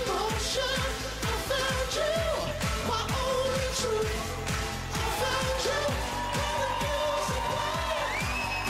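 Live pop song: male voices singing a melody over a steady dance beat with a kick drum about twice a second.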